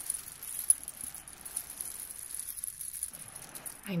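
Fingers turning and rubbing a ball studded with small shiny beads, making soft rapid clicking and jingling, with one sharper click about a second in.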